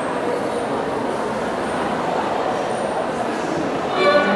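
Steady hubbub of a busy lobby between pieces, a crowd's murmur with no clear voices standing out, before a string quartet's first bowed notes come in right at the end.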